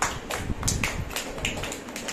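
A few people clapping unevenly: sharp separate claps, several a second.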